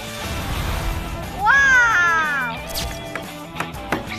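Food stir-frying in a wok over a high flame: sizzling and a low rush of fire in the first second or so. Background music plays throughout. Halfway through, a long voice note slides down in pitch.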